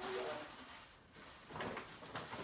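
Paper rustling as a wrapped gift is pulled out of a paper gift bag and handled, with a louder burst of crinkling about one and a half seconds in. A brief bit of voice at the very start.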